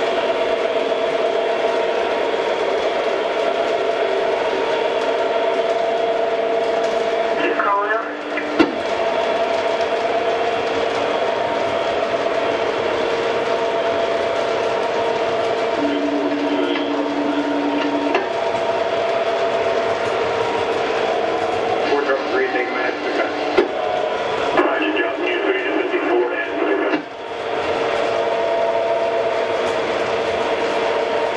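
Electronic sound system of MTH O gauge diesel locomotives: a steady diesel engine drone from the locos' speakers as the train runs. It breaks off briefly about eight seconds in, a short low tone sounds around sixteen seconds, and choppy sounds come and go from about twenty-two to twenty-seven seconds.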